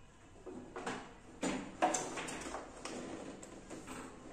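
Plastic keyboard casing being handled and fitted back together: a string of light knocks and clicks as the black bottom shell of a Yamaha PSR 730 keyboard is pressed and shifted into place.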